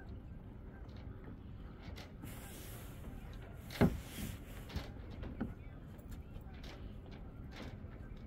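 Champagne splashing out of a bottle onto a fibreglass boat deck, followed just before the midpoint by a sharp knock as the glass bottle is set down on the deck, with a few lighter knocks after it.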